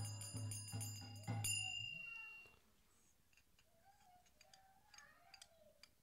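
Hand cymbals and a drum keep a steady devotional beat. A last cymbal strike about a second and a half in rings out, then the music stops, leaving near quiet with faint voices in the hall.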